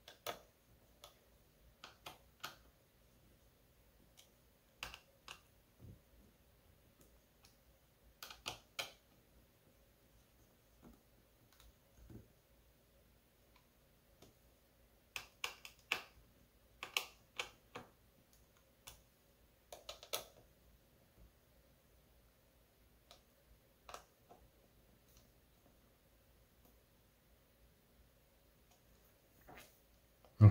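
Scattered small clicks and taps of a small screwdriver turning the CPU heatsink screws on a laptop motherboard, coming in short clusters with near silence between.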